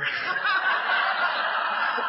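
Audience laughing together at a joke, a steady wash of many voices laughing at once.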